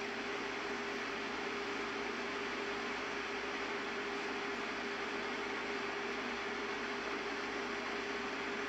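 Steady hiss of background noise with a single steady hum tone running under it.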